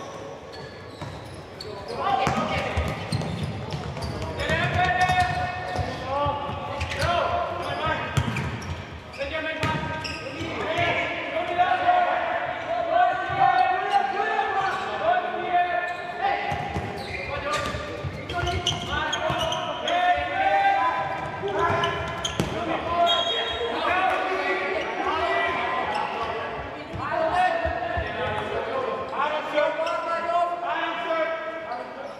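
Indoor futsal play in a large reverberant sports hall: the ball being kicked and bouncing on the hard court floor in repeated sharp thuds, with people shouting and calling almost continuously.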